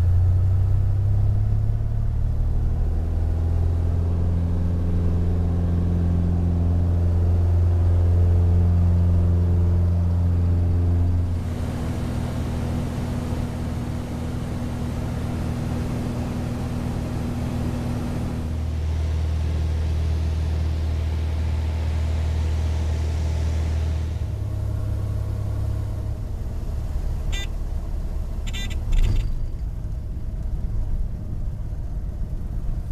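Cessna 182's piston engine and propeller heard from inside the cockpit, a steady deep drone, with sudden shifts in tone where shots of takeoff, cruise and landing roll are cut together. A few sharp clicks and a brief bump near the end.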